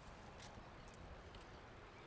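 Near silence: faint steady outdoor background noise, with a couple of faint clicks.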